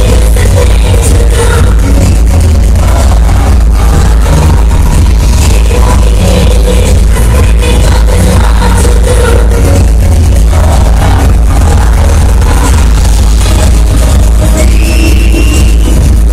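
Live dance-pop music played through a concert PA, heard from the audience. It is very loud and steady, with heavy bass.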